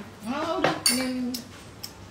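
Cutlery clinking against a ceramic dinner plate during a meal, with a sharp clink a little under a second in and a lighter tick near the end, amid a woman's wordless murmuring.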